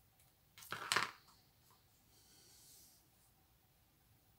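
Small scissors snipping through a ribbon and being put down on the cutting mat: a short double clatter about a second in, followed by a faint rustle of ribbon being handled.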